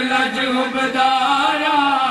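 Unaccompanied male chanting of a devotional qasida, the voice holding long, drawn-out notes with only slight bends in pitch.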